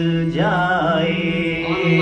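Qawwali singing: a male voice slides up into a long, wavering sung phrase about half a second in, over a steady held drone note.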